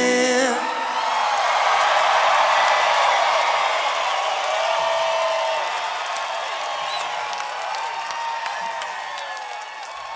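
A rock band's last chord stops about half a second in. A large concert crowd then cheers, whoops and applauds, slowly dying down.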